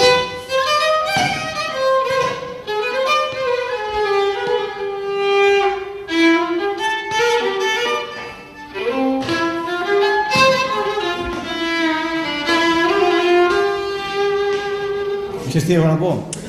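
Solo violin playing a melody of held notes joined by slides, one line at a time, with a short break in the playing about eight seconds in.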